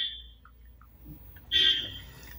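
A high-pitched electronic buzzing tone, heard twice: a brief one at the start and a louder one about one and a half seconds in.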